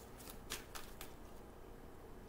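A deck of cards shuffled by hand: about five quick, sharp card snaps in the first second.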